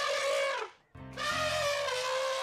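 Hollywoodedge stock elephant-trumpeting sound effect: a brassy trumpet call that bends down in pitch and cuts off. After a brief silence just under a second in, a second trumpet call comes in and holds a steady pitch.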